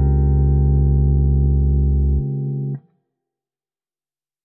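A final chord, Db major 9 with an added 6th, held evenly on an electronic stage keyboard. The bass note drops out a little over two seconds in, and the rest of the chord is released abruptly just under a second later.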